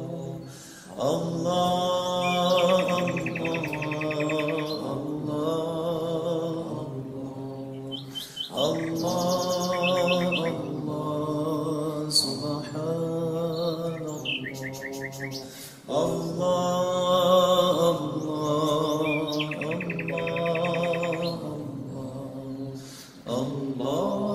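Dhikr chant of Allah's name: a voice intoning a long, slow phrase that repeats about every seven and a half seconds, three times, with a fourth starting near the end. Songbirds chirp and trill over it throughout.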